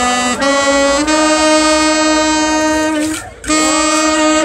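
Slow solo melody on a wind instrument, long notes held steadily, with a brief break about three seconds in before the next phrase.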